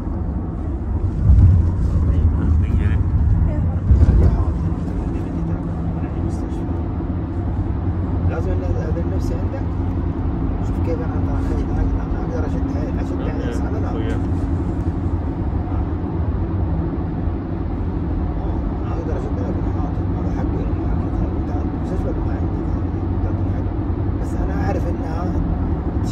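Road and engine noise inside a Toyota sedan's cabin while driving through a tunnel: a steady low rumble with a faint hum. There are two louder low thumps in the first few seconds.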